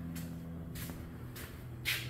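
Quiet room tone: a faint steady low hum with a few soft, brief handling noises.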